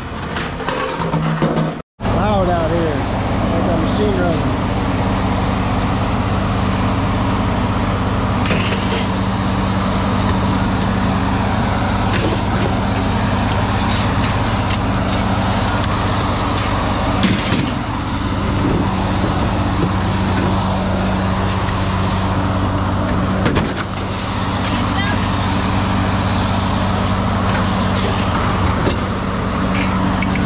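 A vehicle engine idling with a steady low hum, with a few clanks of scrap metal being handled off a trailer, the loudest about halfway through and again about two-thirds of the way in.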